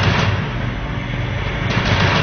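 Cartoon fight sound effects: a loud, noisy rushing crash with repeated low rumbling thuds, swelling again near the end.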